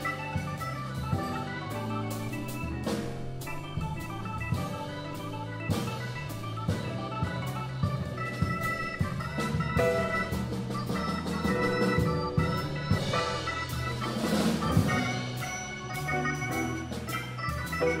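Live jazz on a Hammond XK3 organ, held chords over a low bass line, with a drum kit keeping time. The cymbals swell up about fourteen seconds in.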